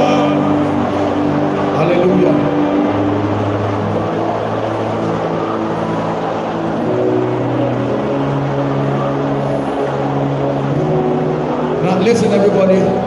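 Sustained keyboard chords, low held notes shifting to a new chord every second or two, over a murmur of voices in a large hall.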